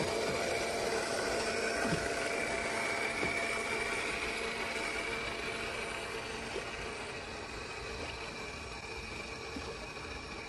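A model paddle steamer's motor and paddle wheels running steadily: a whine with a few held tones over a hiss of churned water, slowly growing fainter.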